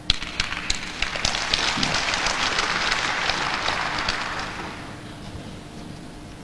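Audience applauding in a large indoor hall. It breaks out suddenly at the start, swells into steady clapping for about four seconds, then dies away near the end.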